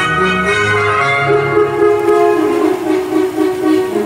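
Orchestral music with long held chords, moving slowly from one chord to the next.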